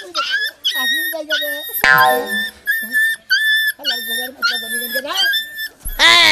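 A puppy whining and yelping in a rapid series of short, high-pitched cries, about two a second, as it is pulled along on a rope leash.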